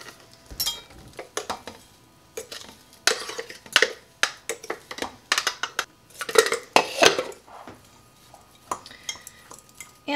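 Irregular knocks, clinks and scrapes as a plastic food processor bowl and its blade are tapped and scraped against a glass mixing bowl, tipping out crushed Oreo crumbs.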